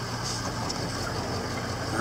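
Steady low hum of a vehicle's engine and tyres, heard from inside the cab while driving on a dirt track.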